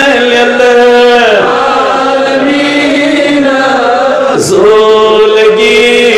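A man's voice chanting in long, drawn-out melodic phrases, holding and bending each note, with a short break about four and a half seconds in.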